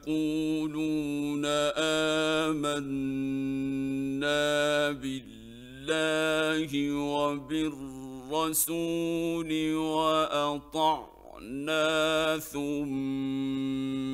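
A man reciting the Quran in the melodic mujawwad style, singing long held notes with ornamented glides in several phrases separated by brief pauses. It comes from an old 1960s Egyptian radio recording.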